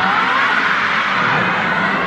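A crowd of fans screaming and cheering, a steady high-pitched din with a few voices gliding up in pitch.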